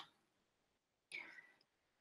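Near silence: a pause in a speaker's talk over a video call, with one faint, brief sound a little after a second in.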